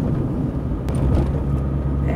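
A car driving at moderate speed, heard from inside the cabin: a steady low engine and road rumble with tyre noise.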